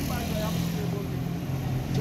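Street traffic: a motor vehicle engine running with a steady low hum under a haze of outdoor noise.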